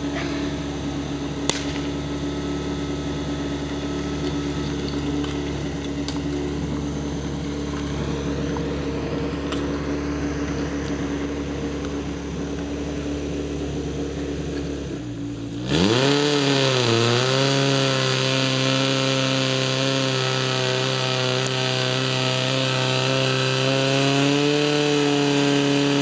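Portable fire pump's small engine running steadily, then about 15 seconds in it revs up sharply and gets louder. It dips once and then holds a higher, slightly wavering pitch as it is throttled up to drive water through the laid-out hoses.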